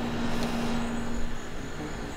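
A steady low mechanical hum over a rushing background noise, with the hum cutting out about a second and a half in.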